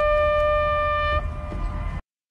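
A long horn blast held on one steady note, ending about a second in, over a low rumble that continues and then cuts off suddenly.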